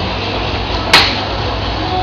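Steady low hum of restaurant room noise at a dining table, with one sharp click or clink about a second in.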